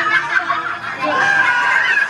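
A person laughing.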